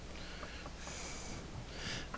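A pen scratching faintly on a paper pad as short strokes are drawn, with the clearest stroke about a second in.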